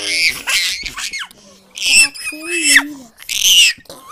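Young children squealing and shrieking with laughter close to the microphone, in a string of loud high-pitched bursts with a lower voice between them.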